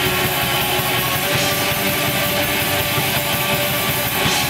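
Live black metal played loud: distorted electric guitars in a dense, unbroken wall of sound.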